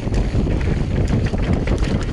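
Wind buffeting the microphone of a camera on a mountain bike descending a dry dirt trail, over the rumble of the tyres and irregular rattles and knocks from the bike on the bumps.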